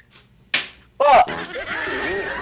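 A short sharp smack about half a second in, then a man's loud "oh" breaking into laughter.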